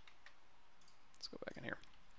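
A few faint, light clicks from a computer mouse, with a short murmured voice sound a little past halfway.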